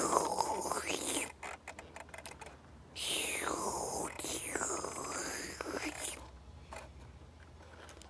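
A person making breathy, whooshing vacuum-cleaner noises with the mouth for the Noo-Noo toy vacuum as it 'cleans up', in two long sweeps, with light clicks of the plastic toy being handled between them.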